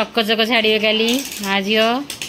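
A woman's voice making long, drawn-out vocal sounds in two stretches, with a short break a little past halfway.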